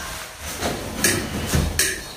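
A few short rustling noises, about a second in and again near the end, from something being handled and lifted up to hang.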